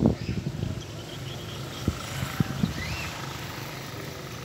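Outdoor street ambience: a steady low rumble of traffic, with a few short sharp knocks about two seconds in and a faint short chirp near the end.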